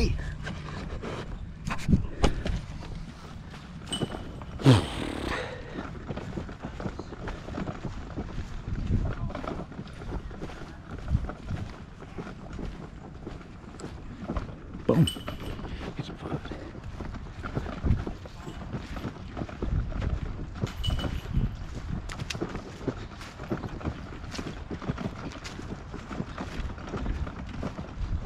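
Wind rumbling on a portable camera's microphone, with handling noise and a few sharp knocks as the camera is carried along, and faint voices now and then.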